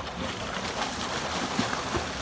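Pool water splashing and churning as a swimmer strokes and kicks right beside the microphone, with spray slapping the surface.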